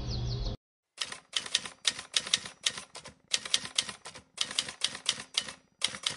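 Typewriter keystroke sound effect: sharp clacking key strikes, several a second in irregular runs, starting about a second in after the background bed cuts off abruptly.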